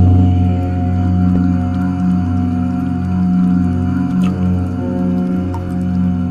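Deep, sustained chanting of the mantra 'Om', held as a steady low drone with long ringing tones above it.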